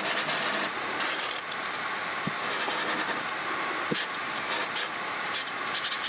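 Sharpie felt-tip marker drawing on paper, its tip scratching in short strokes that come and go every second or so.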